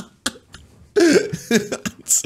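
A man laughing hard, the laughter coming in short voiced bursts from about a second in.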